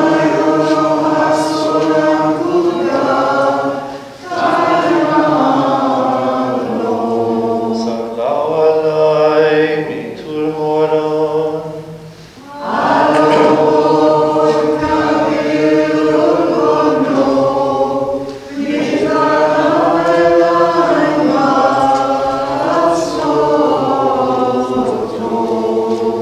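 Choir singing a chanted Maronite liturgical hymn, in long phrases with short breaks about four, twelve and eighteen seconds in.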